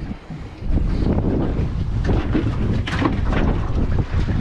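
Strong wind buffeting the microphone: a heavy, uneven low rumble that comes in about half a second in and keeps on.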